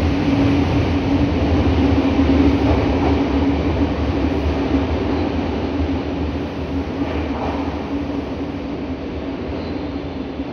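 Nagoya Municipal Subway 6000 series five-car train departing an underground station: continuous rumbling running noise with a steady low hum, gradually fading over the second half as the train moves off into the tunnel.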